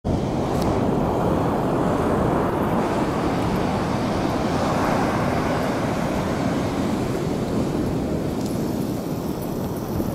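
Steady rushing roar of ocean surf and wind on the microphone.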